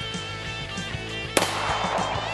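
A single handgun shot a little past the middle, sharp and brief, over background music with a steady beat.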